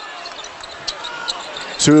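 A basketball being dribbled on a hardwood court: a few faint bounces over the low noise of the arena crowd.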